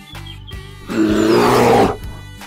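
A cartoon bear's roar, one loud, rough call lasting about a second and starting about halfway through, over background music with a steady beat.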